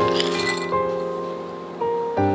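Background piano music with sustained notes. In the first half second, a brief scatter of light ticks as dried currants are tipped into a glass measuring jug of shredded carrot.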